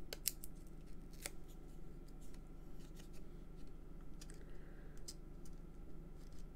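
Faint, irregular clicks and taps of small paper pieces being handled and pressed into place on a card, over a low steady hum.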